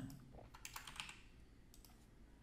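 Faint keystrokes on a computer keyboard: a quick run of them about half a second to a second in, then a couple of faint clicks near the end.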